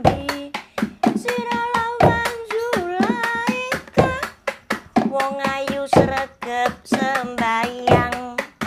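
A woman singing a Javanese song in a wavering, ornamented voice, accompanied by a hand-played drum beating a quick, steady rhythm.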